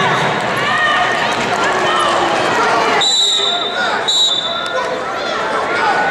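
Spectators and coaches shouting in an arena during a wrestling bout. A short, steady high tone sounds twice near the middle.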